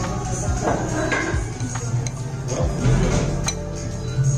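Background music with a steady bass, over a knife and fork clicking and scraping against a ceramic plate as a cheese-topped schnitzel is cut.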